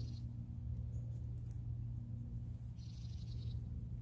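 Two short high trills, one at the start and one about three seconds in, typical of a bird call, over a steady low hum.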